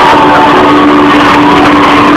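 Live rock band music, very loud and distorted from overloading the recording, with a long held low note and higher notes that slide in pitch.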